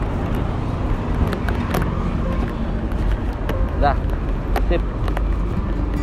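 Steady low rumble of passing road traffic.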